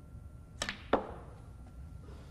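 Snooker shot: the cue tip strikes the cue ball with a sharp click, and about a third of a second later the cue ball clicks louder into an object ball.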